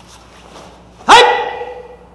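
A man's single loud shout about a second in, a drill count called out by a karate instructor, rising sharply in pitch and then held and fading over most of a second.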